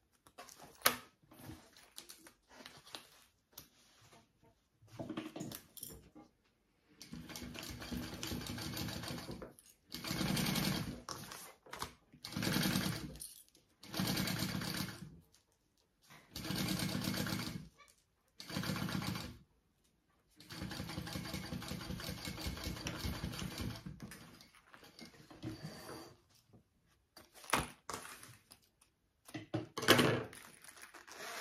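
Kingmax GC0302 industrial sewing machine stitching in a series of stop-start runs, each from about a second to a few seconds long, as a zipper is basted onto a bag panel. A few light clicks of handling come before the first run.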